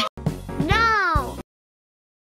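A short meow-like call that rises and then falls in pitch, over the tail of the music, cutting off abruptly into silence about a second and a half in.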